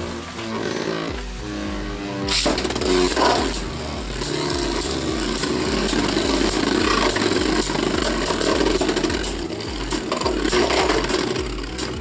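Two Beyblade Burst spinning tops whirring on the floor of a clear plastic stadium, with frequent sharp clacks as they collide. Near the end one top winds down and stops spinning: a spin finish.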